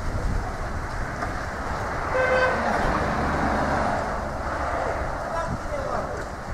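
A vehicle horn gives one short toot about two seconds in, over steady street traffic noise.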